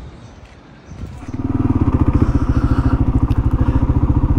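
Single-cylinder engine of a Kawasaki KLR 650 motorcycle, coming in about a second in and then running steadily with an even, pulsing beat.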